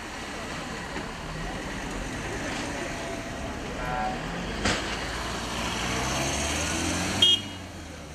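Van engine and tyres passing close in street traffic, growing louder toward the end. A short horn toot sounds near the end, just before the noise drops away.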